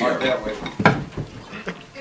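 A sharp knock just under a second in, followed by a few lighter clatters, from people jostling to be first to throw their paper plates into the trash.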